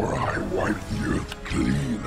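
A cartoon monster's voiced growling, a run of several growls, over a dramatic music score.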